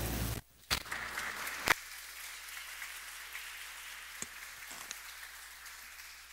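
Audience applauding, the clapping dying away near the end, with two sharp knocks in the first two seconds.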